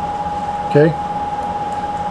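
Steady fan-like background hiss with a thin, constant whine that does not change.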